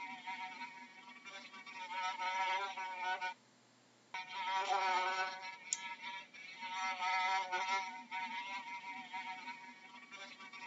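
Housefly buzzing in flight, a pitched buzz that wavers up and down and swells and fades as the fly moves. It cuts out suddenly for about a second about a third of the way in, then resumes.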